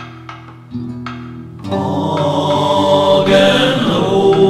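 Sparse folk-song backing of acoustic guitar and a few light knocks, then about a second and a half in, several overdubbed voices come in together on a loud held chord.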